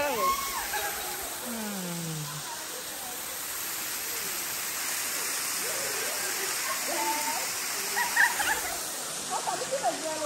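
Steady rushing of a thin waterfall spilling down a rock face. Faint voices come in briefly near the start and again near the end.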